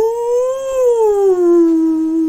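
A long, unbroken howl that slowly wavers up and down in pitch, rising in the first half second and then levelling off lower.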